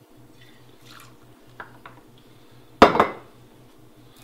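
Gin poured faintly from a glass bottle, with a couple of light ticks, then one loud, sharp clink of glass and metal about three seconds in as the bottle and jigger are handled.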